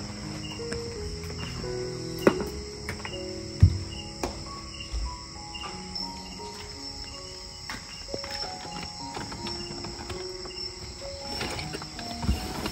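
Crickets chirring steadily, with a slow tune of short held notes playing over them and a few sharp knocks.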